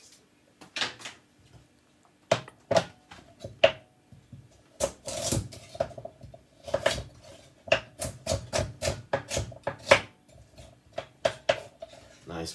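Chef's knife chopping a carrot on a bamboo cutting board: sharp knocks of the blade meeting the board. They come scattered for the first few seconds, then in a quicker run of chops.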